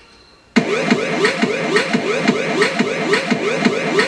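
Synthesized electronic sound from the music video's 8-bit-game-style ending. After a short quiet gap it starts abruptly as a rapid series of rising-and-falling pitch sweeps, about four a second, steady in pace.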